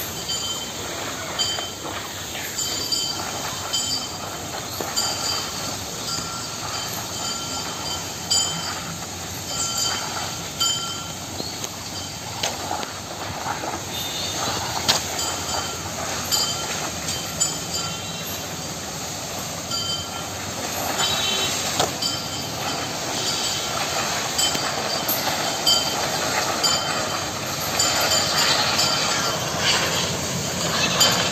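Felled banana tree trunks dragged along a village path by an elephant, making a continuous rough scraping and rumbling that swells and eases.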